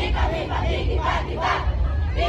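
Cheerdance squad shouting a chant in unison, in rhythmic shouted syllables about two to three a second, over a steady low rumble.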